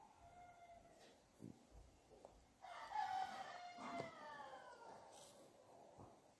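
A faint, long animal call about three seconds in, its pitch falling toward the end.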